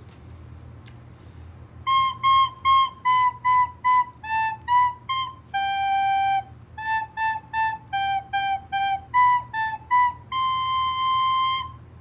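Soprano recorder playing a short melody of separately tongued notes that starts about two seconds in: C C C, B B B, A B C, a held G, then A A A, G G G, B A B and a long held C at the end.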